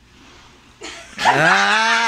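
A person's loud, long drawn-out vocal call that starts about a second in, slides up in pitch and is then held steady for over a second.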